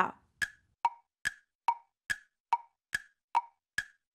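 Wood-block tick sound effect, short hollow pitched ticks evenly repeated about two and a half times a second, used as a thinking timer while the guess is awaited.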